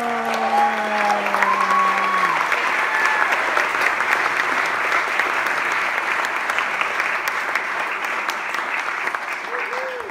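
Large audience applauding, a steady dense clapping that holds throughout, with a few voices calling out in the first couple of seconds.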